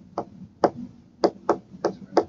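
A stylus tapping and clicking on a tablet touchscreen while letters are handwritten: five sharp taps, unevenly spaced.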